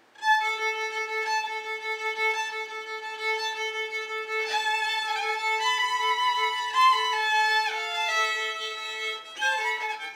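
Two violins playing a duet. One holds a long steady low note while the other plays a slow melody above it, with a downward slide late on. Both stop briefly about nine seconds in, then carry on.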